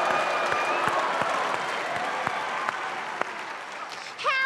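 Studio audience applauding, the clapping slowly fading.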